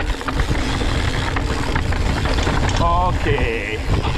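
Mountain bike riding down a rocky dirt singletrack, heard through a bike- or body-mounted action camera: a dense low rumble of wind on the microphone and tyres rolling over stones, with small rattles and knocks from the bike.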